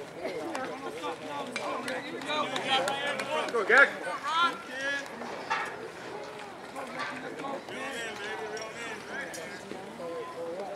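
Several overlapping voices chattering and calling out around a baseball field, no single clear speaker, busiest and loudest a few seconds in.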